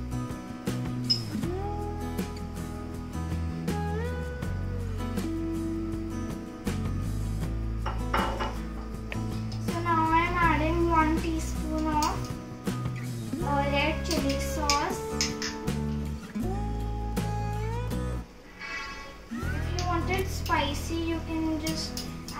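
Background music: a song with a singing voice over sustained bass notes.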